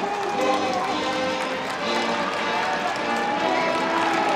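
A stadium cheering section playing band music, with the crowd chanting along in held notes that change pitch every half second or so.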